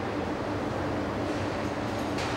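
Steady rumble and hum of a car assembly plant's line machinery, an even noise with a low, constant drone and no distinct events.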